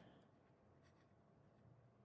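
Very faint scratching of a Scribo Piuma fountain pen's 18k gold extra-extra-fine nib writing on Tomoe River paper, barely above room tone.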